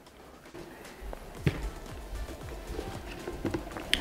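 Quiet background music, with a few soft knocks and footsteps as someone moves about and handles plastic buckets.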